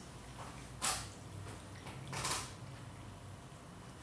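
Siamese cat eating from a bowl on a tile floor: two short, sharp noises, one about a second in and a slightly longer one just after two seconds.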